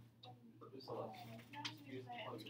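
Faint, indistinct talk among students in a classroom while they work quietly, with a few small clicks and a steady low hum underneath.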